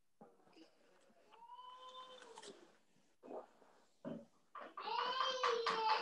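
A young child crying in the background through a participant's open video-call microphone: a short wail about a second and a half in, then a longer, louder wail starting near the end.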